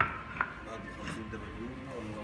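Two sharp knocks on a hard surface, the first the loudest, the second under half a second later.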